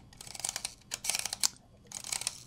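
Shutter speed ring on a Ricoh 500G's lens being turned, a quick run of light detent clicks that stops about a second and a half in.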